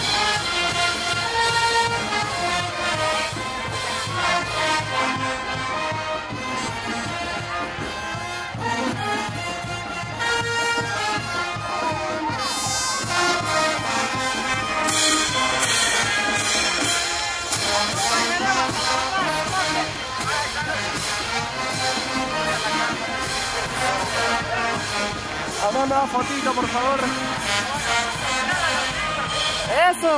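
Brass band playing dance music, horns carrying the melody over a steady drumbeat, with voices in the crowd in the second half.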